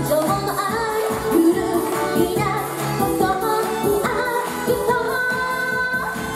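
A woman singing into a microphone over up-tempo pop music with a steady beat.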